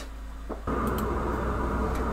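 Quiet room tone that switches abruptly, about two-thirds of a second in, to a louder, steady low hum and rumble of background noise.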